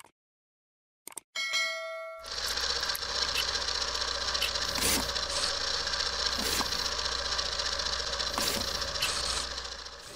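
Channel intro sound effects: a mouse click and a short ringing bell chime from a subscribe-button animation, then a logo-reveal sting of dense metallic noise over a low hum, struck by a few sharp hits, fading out near the end.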